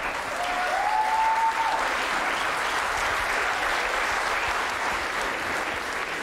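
Studio audience applauding steadily, with a short rising whistle-like tone about half a second in.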